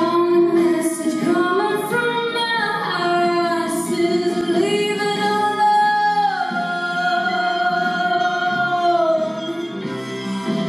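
A young woman singing into a handheld microphone, holding long notes with slides between pitches, the longest held from about six and a half to nine seconds in.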